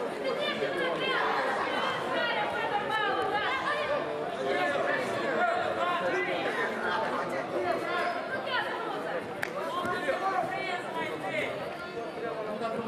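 Many voices talking and calling out at once in a large sports hall: the steady chatter of people around a judo mat.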